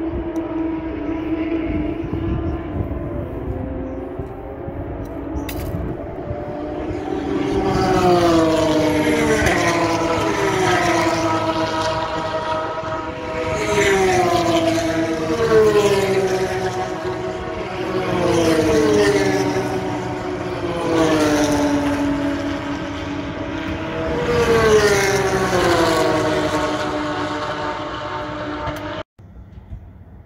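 Race car engines at speed on the track, one car after another going by, each engine note sliding down in pitch as it passes, about every two to three seconds from roughly seven seconds in. A steady engine drone comes before the first pass, and the sound cuts off abruptly near the end.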